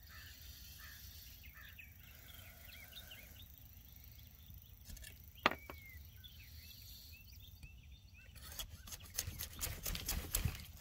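Faint outdoor ambience: a low wind rumble on the microphone with small birds chirping in the distance. A single sharp click comes about five and a half seconds in, and rustling and handling noises build over the last two seconds.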